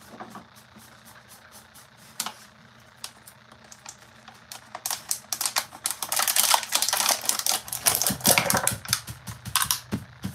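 Rapid, irregular clicking and scratching from hand work at a craft bench. It is sparse at first, then dense and loud from about five seconds in until near the end.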